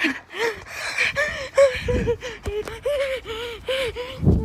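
A person's voice making rapid, short, gasping vocal sounds, about three a second, denser in the second half.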